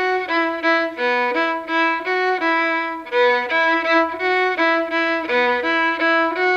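Solo violin bowed in a steady run of short notes, about three a second, moving back and forth among a few pitches.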